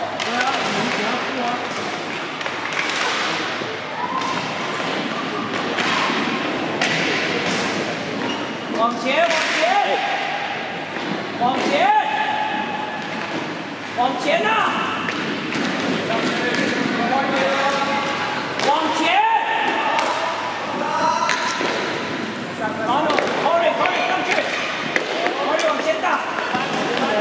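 Sounds of a roller hockey game in an echoing hall: sticks and the puck knock on the wooden floor and against the boards in scattered sharp clacks. Voices call out now and then across the hall.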